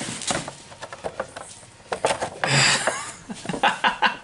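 A cardboard-and-plastic Funko Pop box being handled, with irregular taps and clicks and a brief rustle about two and a half seconds in.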